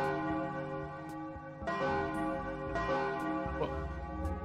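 Bells ringing in a peal, a new strike coming in every second or so, the tones hanging on and overlapping.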